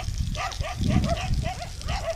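An animal calling in a rapid, even series of short yelping calls, about four a second. A low rumble rises and falls about a second in.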